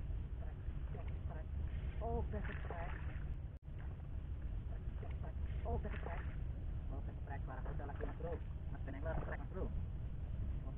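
Indistinct voice sounds over a steady low rumble of wind on the microphone. The sound cuts out briefly about three and a half seconds in.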